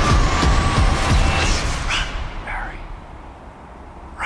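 A loud rushing noise from the trailer's sound design plays through the video. It fades away over the second half.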